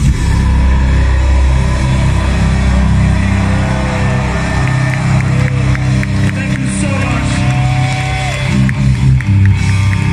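Death metal band playing live through an open-air festival PA, heard from within the crowd: distorted guitars and bass with a heavy low end, and crowd voices shouting over it.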